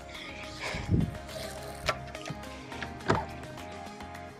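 Quiet background music of sustained, held tones, with a few light knocks.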